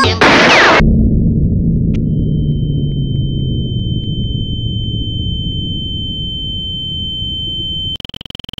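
Heavily manipulated cartoon audio. It opens with a short loud whoosh with a falling pitch, then turns into a low rumbling drone that sinks slowly in pitch. About two seconds in, a steady high-pitched beep tone joins the rumble.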